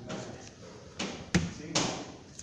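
A single sharp thump a little past halfway through, with short rustling just before and after it, over faint talk.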